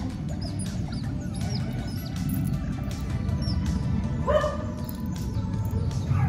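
Smooth-coated otters chirping: many short, high calls that fall in pitch, several a second, with one louder call rising in pitch about four seconds in.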